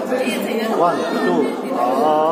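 Several people talking over one another, a jumble of voices in a large room.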